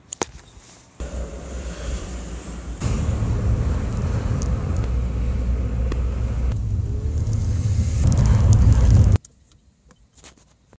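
Low rumble of road and engine noise inside a moving car's cabin. It gets louder about three seconds in, builds toward the end, then cuts off suddenly.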